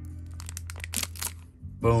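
Foil booster-pack wrapper crinkling and tearing as it is pulled open by hand, a quick run of crackles through the first second or so.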